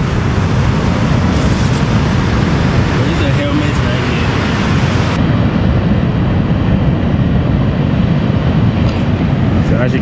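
Loud, steady noise of surf breaking on an ocean beach, with wind rumbling on the microphone. The sound turns duller about five seconds in.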